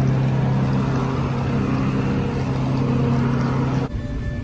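Aircraft running on an airport apron: a loud, steady mechanical hum with a low drone and overtones over a rushing noise, cutting off abruptly near the end.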